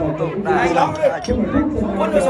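A group of people talking over one another in lively chatter.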